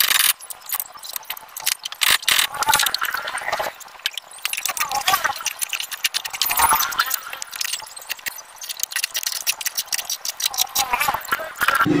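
Light metallic clinking and rattling from hand work at a car's front wheel hub as the wheel and its nuts are fitted: many quick, irregular clicks and clinks of metal on metal.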